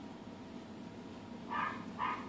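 Vintage tube AM radio being tuned across the band: faint static hiss from the speaker, then about one and a half seconds in, two brief higher-pitched snatches of sound as the dial passes signals.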